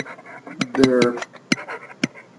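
Stylus tapping and scratching on a tablet as words are handwritten, a quick run of sharp clicks, with a short murmur of voice about a second in.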